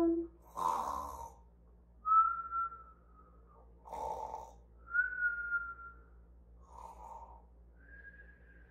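A woman's pretend cartoon snoring: a rasping snore drawn in, followed by a thin, slightly falling whistle blown out. The cycle repeats about every three seconds, three times.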